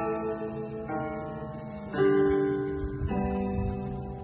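Electronic keyboard played in slow chords, a new chord struck about once a second and left to ring, the loudest about halfway through.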